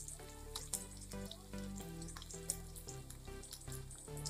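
Green chillies and garlic frying in hot oil in a kadhai: a steady sizzle with scattered crackles.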